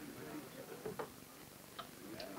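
A few sharp clicks of a woman's high-heeled shoes on a wooden floor as she rises and steps away, over a faint murmur.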